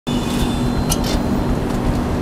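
Steady background rumble with a constant low hum, broken by two brief scuffing noises about a second in.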